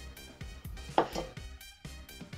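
Background music with a steady beat, and about a second in a sharp clink of glassware being handled, followed quickly by a smaller one.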